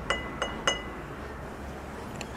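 Wooden sticks tapped against the rims of drinking glasses, three short ringing glass clinks in the first second, knocking fire ants off into the water.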